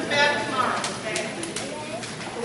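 Voices in a large hall trailing off in the first second, then a handful of short, sharp clicks in quick succession.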